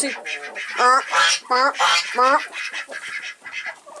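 Domestic waterfowl roosting in a coop, giving a rapid series of short honking calls that taper off in the last second or so.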